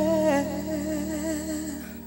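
Closing bars of a contemporary Christian pop ballad: a woman's voice holds a wordless note with a wide vibrato over sustained keyboard chords. The voice stops near the end while the chords ring on more quietly as the song fades.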